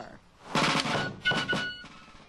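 Civil War–style fife and drum: a rapid snare drum roll about half a second in, followed by high fife notes.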